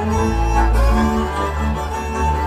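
Hungarian folk string band of fiddles and double bass playing dance music with held notes over a steady bass line.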